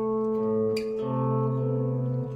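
Electric guitar sounding held two-note intervals: a low A under a higher A, then about a second in the bass note moves up to C, giving a first-inversion A minor dyad.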